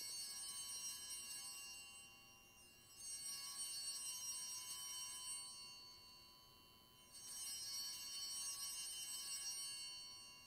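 Altar bells, a cluster of small high-pitched bells, shaken three times about four seconds apart, each peal ringing and fading. They mark the elevation of the chalice at the consecration of the Mass.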